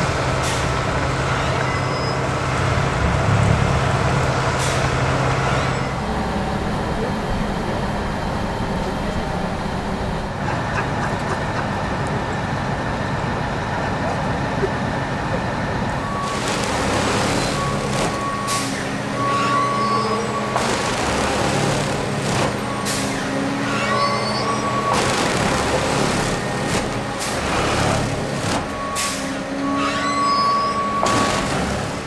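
S7 PLS 16 4.0-S track tamping machine at work: its engine runs steadily, and in the second half the tamping units cycle into the ballast in repeated bursts of hissing noise, with short beeps between them.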